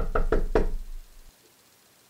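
A quick run of loud knocks on the front door, about five a second, stopping within the first second.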